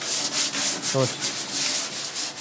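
Solid oak tabletop edge being sanded by hand: abrasive paper rubbing in quick back-and-forth strokes to ease an edge that is still too sharp.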